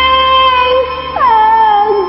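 A woman singing a long held high note over a backing track, then sliding down to a lower note a little after a second in.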